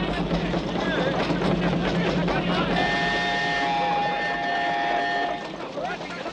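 Steam traction engine running, with its whistle blowing a chord of several steady tones for about two and a half seconds in the middle.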